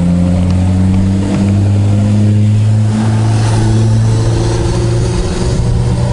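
Suzuki Katana motorcycle's inline-four engine running steadily under way, its pitch shifting slightly and dipping briefly about five seconds in.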